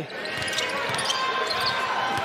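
Arena crowd murmur with a basketball being dribbled on the hardwood court during live play.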